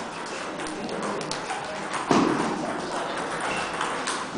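Table tennis ball clicks: quick, sharp ticks of a ball bouncing on a table and off bats in a reverberant hall, with one louder thud about two seconds in.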